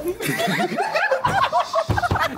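A group of people laughing hard, in a rapid run of repeated laughs, with a low thump just before the end.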